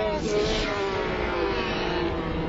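A cartoon character's voice slowed right down, stretched into one long, low, smeared vocal sound that slides slowly lower in pitch over a dense blurred background.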